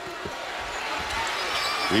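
Basketball arena crowd noise, swelling steadily as a shot goes up and the rebound is fought for, with a couple of dull thumps of the ball.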